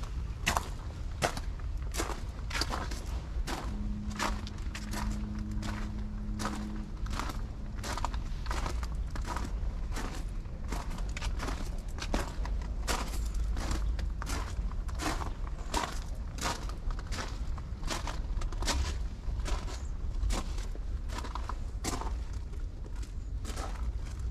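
Footsteps crunching on a gravel path at a steady walking pace, about two steps a second.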